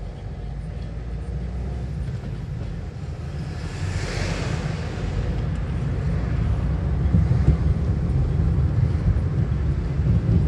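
A car's engine and road noise, a low rumble that grows gradually louder as the car pulls away from the lights and picks up speed. A brief hiss comes about four seconds in.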